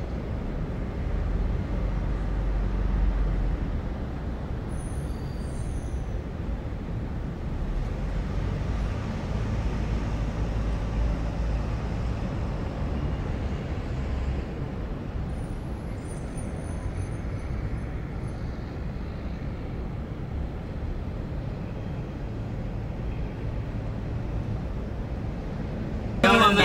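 Steady street traffic noise, low and even throughout, with a few faint high-pitched chirps around five seconds in and again around sixteen seconds.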